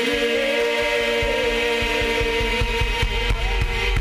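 Live worship music: women's voices holding a long sustained note of a praise song over a keyboard, with a steady low beat coming in about a second in.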